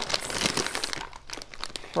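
A plastic snack bag of popcorn crinkling as it is handled and held up. It is loudest in the first second and quieter after.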